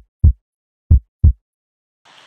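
Heartbeat sound effect: deep, dry double thumps in a lub-dub rhythm, two pairs about a second apart, with silence between.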